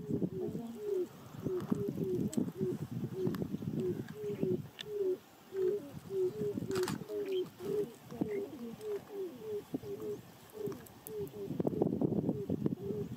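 Grey crowned cranes calling: a long run of short, low notes, two or three a second, several overlapping as more than one bird calls. A single sharp click sounds a little past the middle.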